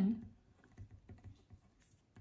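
Ballpoint pen writing on paper: a run of faint small scratches and light taps as a word is written out.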